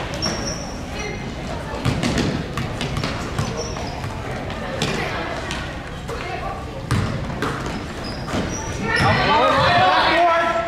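A basketball bouncing on a gym's hardwood floor, with sneakers squeaking and players' and spectators' voices echoing in the large hall. The voices rise to a loud shout near the end.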